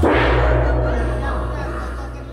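A large gamelan gong struck once, its deep tone ringing on and slowly fading.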